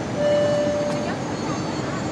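Steady cabin noise heard from inside a Boeing 747-8I airliner during its descent. About a quarter of a second in, a single steady electronic tone sounds over the noise for just under a second and then stops.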